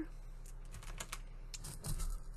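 Scattered light clicks and taps from small craft pieces being handled on a work mat: a wire-bound cluster of beaded strands being set down and a small plastic jar reached for. The clicks come a little more often near the end.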